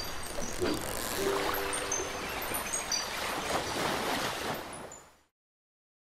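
Outro sound design of surf and rushing water with short, high bird-like chirps scattered through it and a brief held low tone between one and two seconds in; it fades out about five seconds in.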